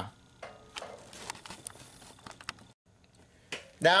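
Scattered light clicks and taps over a faint hiss for a couple of seconds, then a brief silence, then a short sound as a man's voice starts up again near the end.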